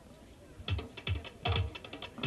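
A percussion beat comes in about half a second in: deep drum thuds with sharp clicks on each stroke, about two to three strokes a second, accompanying a folk dance.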